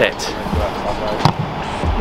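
A boot striking an Australian rules football on a right-foot kick: a single sharp thud about a second and a quarter in.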